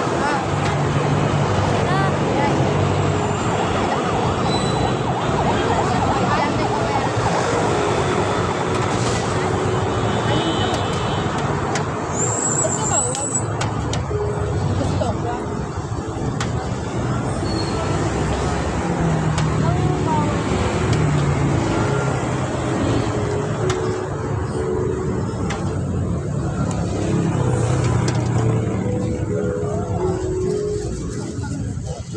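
Steady street traffic from motor vehicles on a busy road, with people's voices mixed in.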